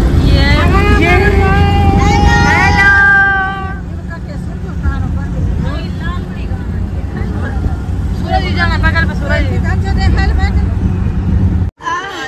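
Steady low rumble of a vehicle on the move, heard from inside the cabin with road and wind noise, and passengers' voices calling out over it, loudest in the first few seconds and again later.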